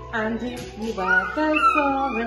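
Short, wordless, sing-song coos and squeals, rising and falling in pitch, from a mother playing with her young baby.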